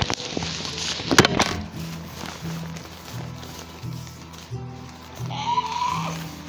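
Background music with a steady, rhythmic bass line, two loud knocks of handling at the start and about a second in, and, near the end, a short rising electronic screech from a toy velociraptor hand puppet.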